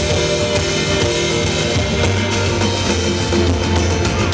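Live band playing rock music through the stage PA, with drum kit and guitar and a heavy, steady low end, heard from within the audience.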